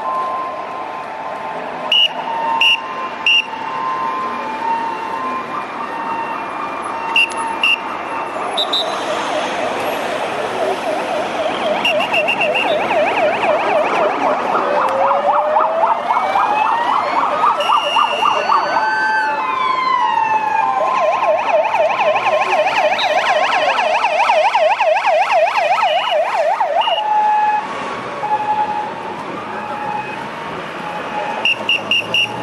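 Police escort sirens of a passing motorcade, several sounding at once. They switch between a fast warbling yelp and a slow rising and falling wail, and are loudest from about nine seconds in until near the end. A few short high blips sound in the first seconds.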